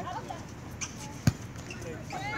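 A single sharp impact of a volleyball a little over a second in, with faint players' voices around it.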